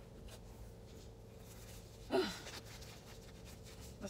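Quiet car cabin with faint rustling of handling and a steady faint hum. A short sigh-like breath comes about two seconds in.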